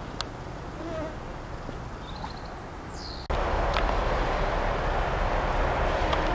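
Quiet outdoor ambience with a few faint chirps. About three seconds in, it switches abruptly to loud, steady noise from heavy machinery working a recycling yard's skips.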